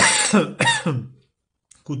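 A man clearing his throat in two quick voiced bursts.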